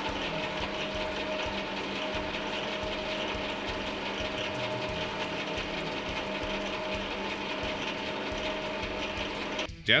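Small metal lathe running steadily in low gear under power feed, its chuck turning an arbor that winds 1 mm spring wire into a tight coil: an even motor and gear-train hum with a steady whine.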